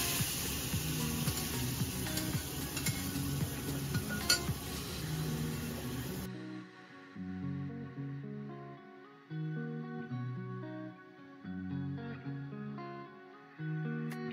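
Meat stock sizzling and bubbling in hot oil in a frying pan, with a few clinks of a spatula, over background music. About six seconds in, the frying sound cuts off suddenly and only the music is left.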